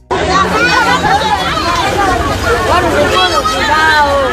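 A crowd of children chattering and calling out all at once, many young voices overlapping.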